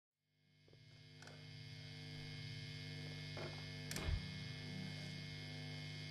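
Electrical hum from an electric guitar rig, a 1964 Fender Vibroverb valve amp fed by a pedal board, idling with no notes played. The hum fades in over the first two seconds and then holds steady, with a few faint clicks and a short low thump just before four seconds in.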